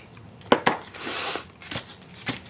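Scissors snipping burlap ribbon and being laid down on the table: two sharp clicks about half a second in, then a short papery rustle and a few light taps as the paper treat holder is handled.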